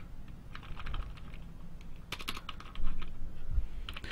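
Computer keyboard keys being typed: scattered taps, then a quick run of keystrokes about two seconds in.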